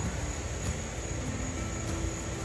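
Steady noise of a fan running nearby, with a thin, steady high insect drone above it and a few faint clicks.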